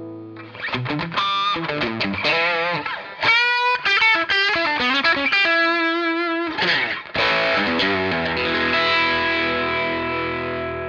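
Overdriven electric guitar played through a Menatone Fish Factory pedal, its Blue Collar Overdrive side engaged: a picked lead line with wavering vibrato notes and a held note, then, after a short break about seven seconds in, a chord left to ring out.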